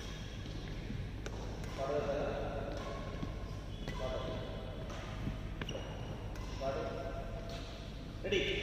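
Voices in a large, echoing sports hall between badminton rallies, over a steady low hum, with a couple of sharp taps.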